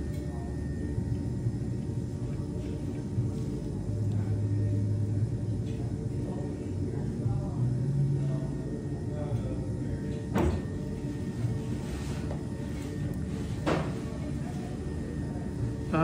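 Electric potter's wheel motor humming steadily as the wheel spins under wet clay being thrown. Two short, sharp clicks come about ten and fourteen seconds in.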